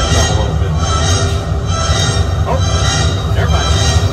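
Gas-fired flame effect burning on the water beside an open tour tram, heard as a loud, steady low roar, with faint voices and music under it.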